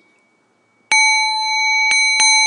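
Buddhist prayer bell (rin) struck twice, about a second apart, each strike ringing on with several steady high tones; rung to open the gongyo chanting.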